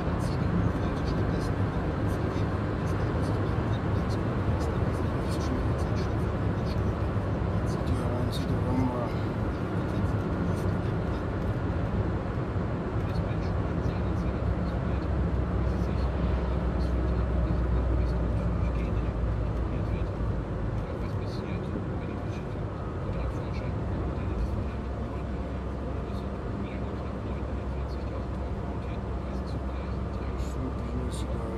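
Steady road and engine rumble heard inside a moving car's cabin. It eases a little about two-thirds of the way through.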